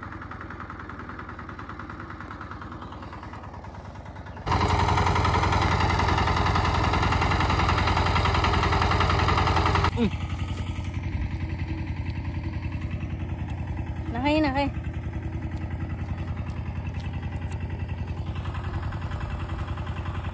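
A tractor engine running in a steady, low, pulsing drone, much louder for about five seconds starting about four seconds in. A brief wavering call sounds over it near the fifteenth second.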